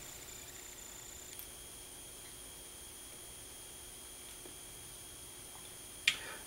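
Quiet room tone with a faint steady high-pitched whine, and a faint tick about a second and a half in.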